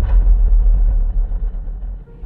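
Deep, loud low rumble of a cinematic intro boom sound effect, fading away toward the end.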